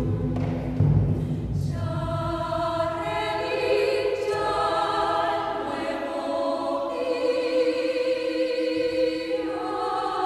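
Mixed choir singing a vidala, an Argentine folk song, in sustained harmonised chords with vibrato. A low booming sits under the voices for the first second or two.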